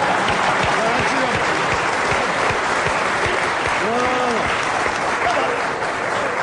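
Studio audience applauding steadily, with a few voices heard over the clapping.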